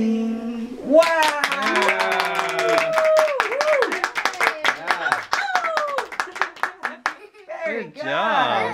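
Children's singing ends on a held note about a second in, then a small group claps with voices calling out over the clapping. The clapping thins out and stops near the end.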